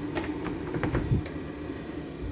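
A quick string of light clicks and rattles from an interior door's handle and latch as the door is opened.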